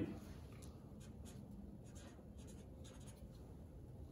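A marker writing on a paper sheet: a series of short, faint strokes, jotting down a meter reading.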